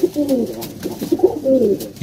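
Domestic pigeons cooing: several low coos overlapping, some falling in pitch.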